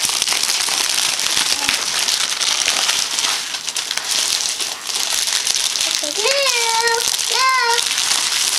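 Gift-wrapping paper being torn and crinkled off a cardboard present box, a continuous crackling rustle that slackens briefly around the middle.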